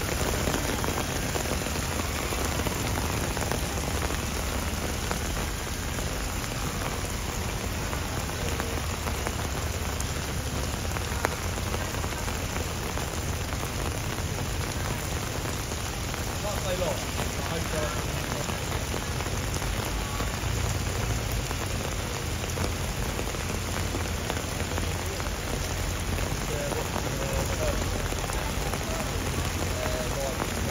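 Heavy rain falling steadily, an even downpour with no let-up.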